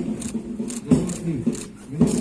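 A person speaking, in words the recogniser did not catch.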